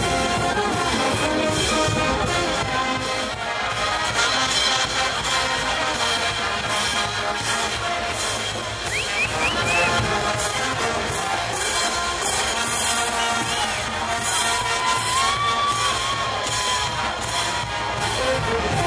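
Brass band playing over a steady drum and cymbal beat.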